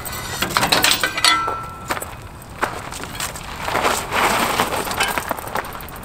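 Clicks, knocks and light metal rattles from handling a bicycle and a hitch-mounted bike rack, with gravel crunching underfoot.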